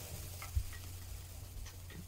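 Faint, sparse clicks and small knocks of kitchen handling at a counter, utensils and dishes, heard over a low steady hum.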